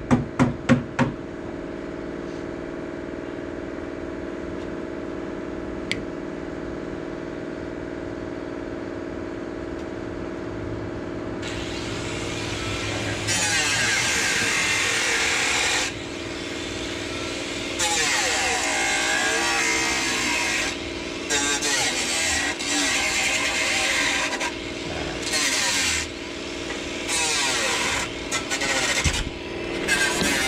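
A few quick hammer blows right at the start, then a steady machine hum. From about thirteen seconds in, a loud power tool runs in repeated on-off bursts of a few seconds each.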